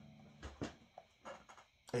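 A man's drawn-out hesitation "um" trailing off, followed by a few short, faint clicks and breaths.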